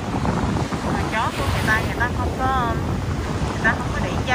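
Strong wind buffeting the microphone over the wash of gentle surf, a steady rumble throughout.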